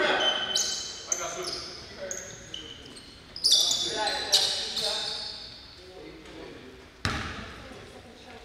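Basketball game sounds in a reverberant gym: sneakers squeak in short high chirps on the hardwood floor and players' voices call out. A sharp thud comes about seven seconds in.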